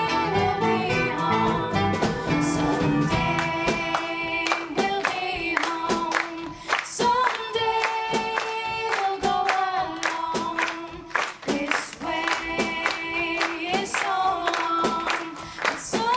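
Live pop band with female singers; about four seconds in the bass and drums drop back and the singing carries on over rhythmic hand clapping.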